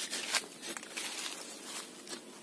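A blade cutting and scraping into the wood of a waru (sea hibiscus) branch in irregular strokes, nearly through the piece being cut free.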